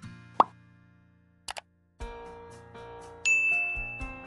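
Sound effects of a subscribe-button animation: a short rising pop a little under half a second in, two quick clicks at about a second and a half, then a short tune from two seconds in, with a bright bell ding a little past three seconds, the loudest part.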